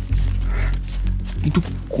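Background music score with a steady low drone, layered with a wild animal's call as a sound effect; a man's narrating voice comes in near the end.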